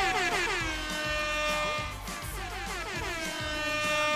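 Loud game-show music stinger with horn-like blasts: two of them swoop down in pitch and settle into a held note, the second about two and a half seconds after the first.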